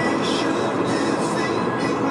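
Music playing over the steady road noise of a moving car heard from inside the cabin.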